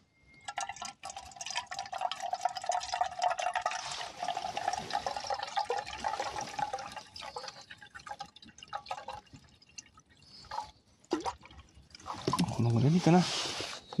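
Water poured from a plastic bottle into a small empty camping kettle, a steady splashing and glugging fill that runs about nine seconds and then stops. A man's voice starts near the end.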